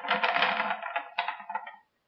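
Solid copper wire handled and bent into a spiral, crackling and scraping against the board under the fingers, dying away about a second and a half in.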